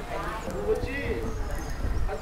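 Background voices talking indistinctly.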